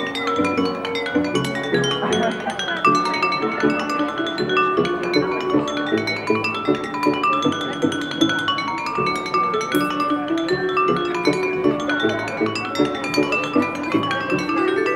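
Glass harp: wet fingertips rubbing the rims of wine glasses tuned with water, playing a melody of sustained ringing notes that overlap into chords.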